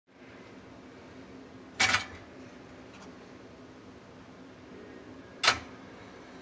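Two short scraping knocks, about three and a half seconds apart, as slices of bread are set into the slots of a chrome Sunbeam Radiant Control toaster, over a faint steady hum.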